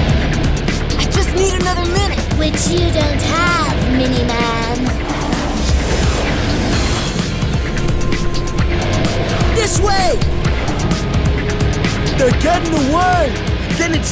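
Cartoon action-scene soundtrack: loud music mixed with futuristic vehicle sound effects during a street chase, with short gliding voice cries.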